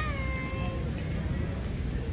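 A cat meowing once, a single meow that rises then falls and trails off within about a second near the start, over a steady low background rumble.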